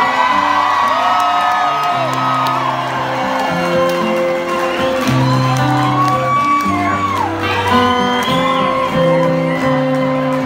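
A large live folk-rock ensemble of acoustic guitars and accordion plays a song with sustained chords, while the audience whoops and shouts over it.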